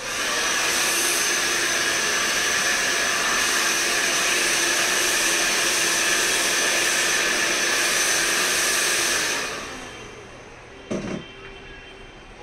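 Hand-held hair dryer switched on and blowing steadily, with a low motor hum and a high whine, then switched off about nine and a half seconds in and running down. A short knock follows near the end.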